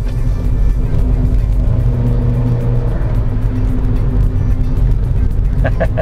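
Nissan Grand Livina's 1.5-litre HR15DE four-cylinder engine running through its CVT while the car drives along, a steady drone with road noise. Background music plays over it.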